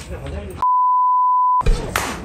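A steady electronic beep, one pure tone held for about a second, cut cleanly into dead silence on both sides: an edited-in tone at a scene change. Murmur and dish clatter come before it, and street noise follows.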